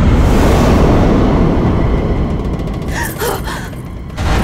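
A loud, low rumbling soundtrack effect that fades slowly, with a short gasp about three seconds in.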